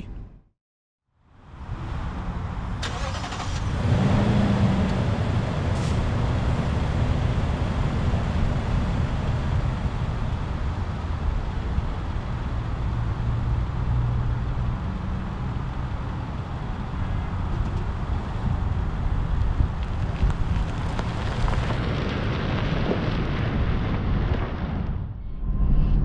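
A 2021 Lexus GX460's 4.6-litre V8 pulling the SUV down the road, mixed with tyre and wind noise, heard from inside the cabin. It begins after a second of silence and gets louder about four seconds in.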